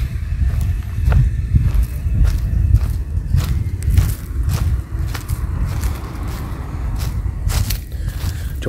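Footsteps through dry leaf litter and twigs, heard as many irregular sharp clicks and snaps, over a steady low rumble on the handheld phone's microphone.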